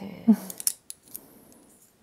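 A brief vocal murmur, then a few light, sharp clicks and clinks of small hard objects about half a second to a second in.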